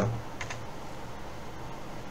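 A faint click or two of a computer keyboard about half a second in, over a steady low background hum.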